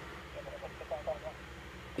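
A faint voice speaking briefly, well below the narrator's level, over a steady low hum.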